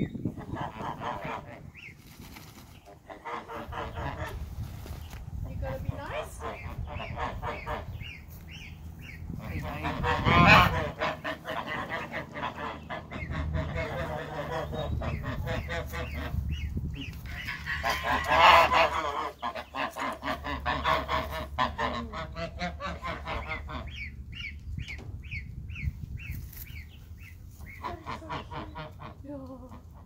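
Domestic geese honking again and again, with loud bursts of calling about ten and eighteen seconds in.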